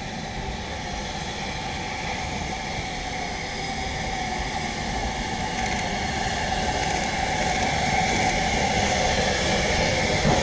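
BR Standard Class 5 4-6-0 steam locomotive running into the station, a steady hissing and running noise that grows gradually louder as it approaches.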